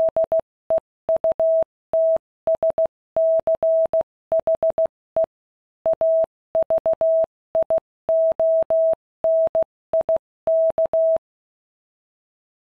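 Morse code sent as a single steady mid-pitched beep, keyed in quick dots and longer dashes with short gaps between characters, stopping about a second before the end.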